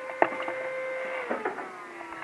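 Brother HL-2230 laser printer running a print job with a copper-clad board feeding through it: a steady mechanical whine with a few clicks. Just past halfway, the whine steps down to a lower pitch.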